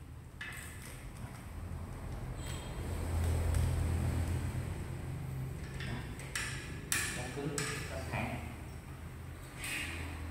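Plastic clicks and scrapes from a PVC chicken drinker line with red nipple-drinker cups being handled against its metal support rail, over a steady low hum. A cluster of sharp clicks comes about six to seven seconds in and another near the end.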